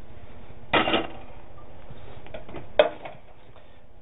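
Kitchen cookware being handled: a short clatter of a pot or utensil about a second in, then a single sharp click near three seconds in, over a faint steady hiss that drops away just after the click.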